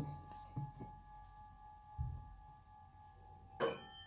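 Hand-forged tempered-iron tingshas ringing with a long, steady sustain of several pure tones. A low bump comes about two seconds in, and a short knock near the end brings in a higher tone.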